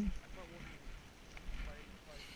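Faint, brief bits of talk from people standing on the ice, with low wind buffeting on the microphone.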